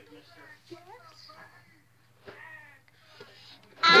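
Faint, quiet voices murmuring over a low steady hum, then just before the end a young girl breaks into loud singing.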